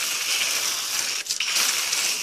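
Water spraying in a steady hissing stream from a garden-hose foam gun onto a pickup truck's side panel, the gun nearly emptied of soap so it rinses the body. There is a brief break in the spray about a second in.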